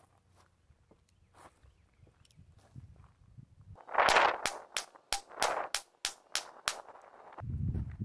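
A Heritage Rough Rider nine-shot .22 revolver with a six-inch barrel firing a fast string of about nine sharp shots over some three seconds, starting about four seconds in, the first one echoing. A low rumble follows near the end.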